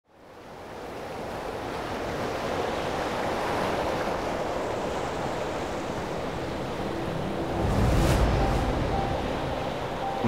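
Ocean surf breaking and washing up a sandy beach, fading in from silence at the start, with a louder wave rush about eight seconds in. A few low held tones come in during the last three seconds.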